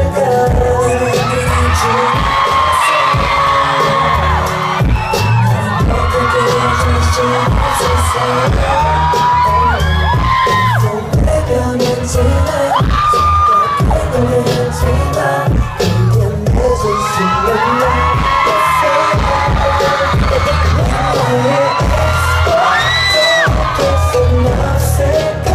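A K-pop boy group singing live over a loud amplified pop backing track with a heavy pulsing bass beat, with fans screaming and cheering over the music throughout.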